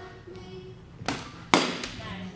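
A softball bat hitting a ball: one sharp crack about one and a half seconds in, the loudest sound here. A lighter knock comes just before it and another just after, over background music.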